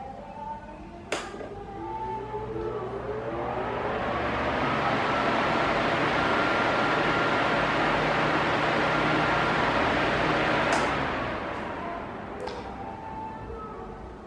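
Arno Silence Force 40 cm pedestal fan switched on with a knob click about a second in. The rush of air builds over a few seconds to a loud, steady level with a faint motor whine and covers the faint background music. Near the end there is another click, and the rush dies away as the blades slow.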